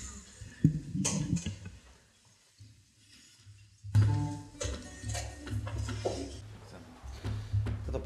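Voices and laughter in the room fade into a short gap of near silence. From about four seconds in, an acoustic guitar is played lightly before a song.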